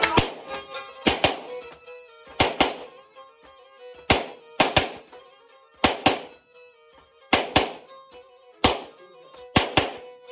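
Black Sea kemençe playing quietly in held notes. Sharp percussive strikes land over it, mostly in pairs, about every one and a half seconds, and they are the loudest thing heard.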